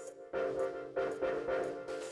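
Live band playing: repeated pitched chords restruck about every half second, with cymbal strokes from the drum kit over them.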